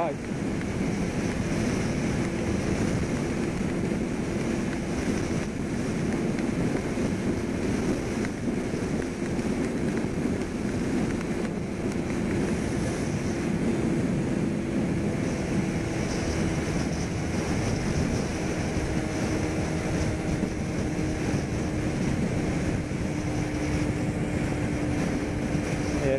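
Wind rushing over the microphone of a Kawasaki Ninja 250R at highway speed, with the bike's parallel-twin engine holding a steady tone underneath.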